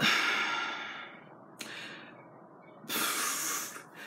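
A woman breathing audibly without words: three breaths, the first the longest and fading out, a short one in the middle, and another just before she speaks again.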